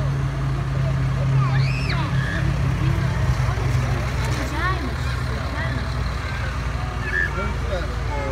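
Diesel engine of a John Deere tractor running steadily as it drives slowly past close by, a low hum that is strongest in the first three seconds, with people's voices chattering around it.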